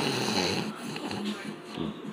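A man's quiet, breathy, wheezing laughter, trailing off.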